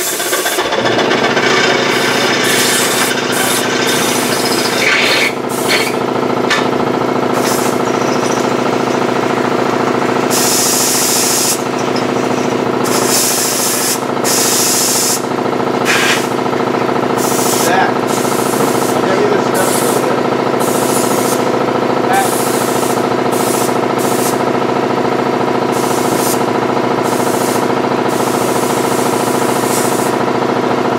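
Compressed air hissing in short bursts from an air hose, with longer blasts about ten and thirteen seconds in, over a steady mechanical hum that starts about half a second in.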